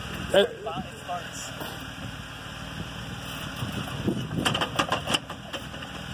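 A Jeep Wrangler JK's 3.8-litre V6 idling in gear with the clutch out while the unloaded tires turn freely: the Trutrac limited-slip differential is not sending torque to the wheels that have grip. About four seconds in comes a quick run of sharp clicks, which the spotter takes for a U-joint binding at full axle articulation.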